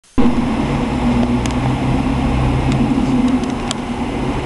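Heavy refuse truck's diesel engine running with a steady low drone, and a few faint clicks over it.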